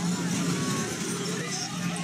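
A crowd of people shouting and crying out over a continuous heavy noise as brick temples collapse in an earthquake, with dust and rubble coming down.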